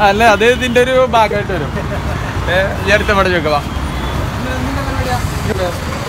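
Two brief bursts of voices, in the first second and about two and a half seconds in, over a steady low rumble of road traffic and vehicle engines.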